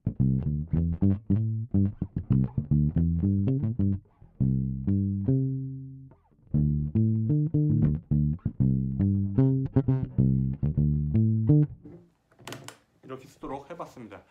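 Fender Jazz Bass with Delano pickups played fingerstyle, its string mute at the strongest of three settings, so the low notes sound completely dead and short. The line pauses briefly about halfway and stops a couple of seconds before the end, followed by a few short noises.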